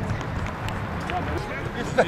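Players' voices calling across an outdoor football pitch, with scattered footsteps. A single sharp thud of a ball being kicked comes at the very end.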